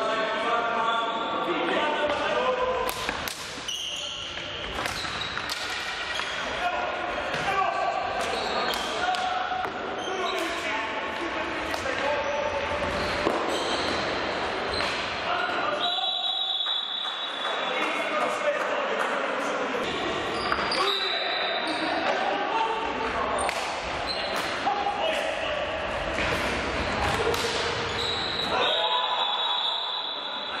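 Indoor hockey being played in a sports hall: repeated sharp knocks of sticks and ball striking, with players shouting, all echoing in the hall, and a few short high squeaks.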